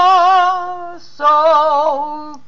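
A woman singing long held notes with vibrato. The first note stops about a second in, and a second note starts shortly after and slides down in pitch near the end.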